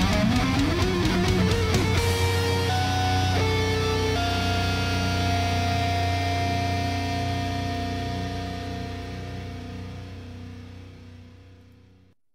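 The ending of a heavy metal song. The full band stops about two seconds in, leaving a few picked electric guitar notes and a ringing chord that slowly fades out until it cuts off.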